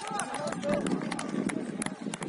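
Footballers' voices calling out on the pitch, mixed with quick, irregular clicks of footfalls and ball contacts on artificial turf.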